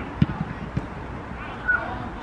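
A football kicked with a sharp thump about a quarter of a second in, followed by a couple of softer thuds, then a brief high-pitched shout near the end.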